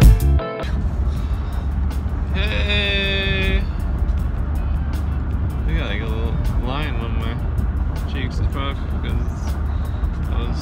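Music cuts off about half a second in, giving way to the steady low rumble of road and engine noise inside a moving car's cabin, with a person's voice a few times over it.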